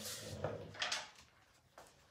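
Short knocks and rustling from hands picking up painting supplies off a shelf, including a plastic mister bottle and a paint cup, in the first second; the rest is quiet room tone.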